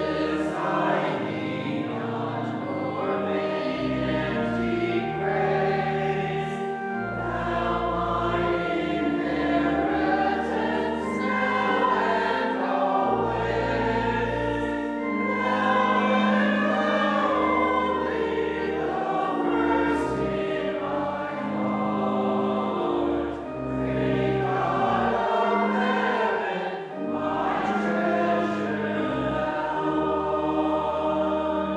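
Congregation singing a hymn with church organ accompaniment: held chords over deep bass notes that step to a new pitch every second or two.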